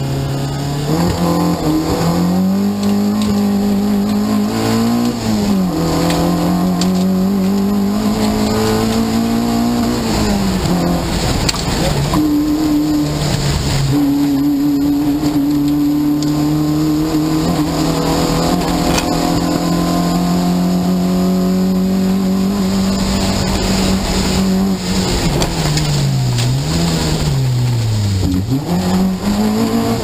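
Peugeot 205 GTI rally car's four-cylinder petrol engine heard from inside the cabin at stage pace: revs climb and drop sharply at gear changes about five and ten seconds in, hold high and steady for a long stretch, then fall and rise several times near the end as it brakes and downshifts.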